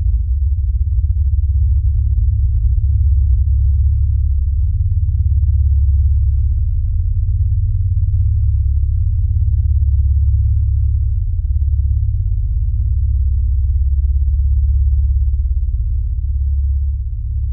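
RSL Speedwoofer 12S, a ported 12-inch home theater subwoofer, playing a loud, sustained deep bass drone from a film soundtrack. Only low bass is heard, swelling and easing slightly.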